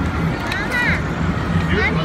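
Busy street ambience: a steady low hum of idling and slow-moving traffic, with snatches of passers-by talking close to the microphone.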